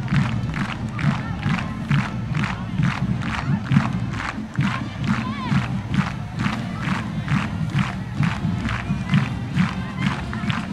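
Marching band playing with a steady percussion beat a little over twice a second over low brass notes, with crowd noise from the stands mixed in.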